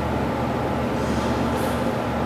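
Steady, even background noise with a low hum running through it, unchanging in level, and a brief faint hiss near the end.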